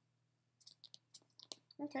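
A quick run of short sharp clicks from a plastic Pop Chef fruit-shape mold as its plunger is pushed to pop watermelon shapes out.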